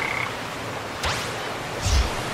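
Tree frog croaking, an added sound effect. About a second in there is a rising whoosh, and a low thump comes near the end.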